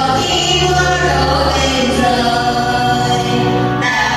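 A choir singing a hymn with music, steady and unbroken.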